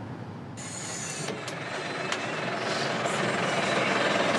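Bus engine and road noise heard from inside a moving bus, growing steadily louder. A high hiss joins suddenly about half a second in, and a few light clicks or rattles sound over it.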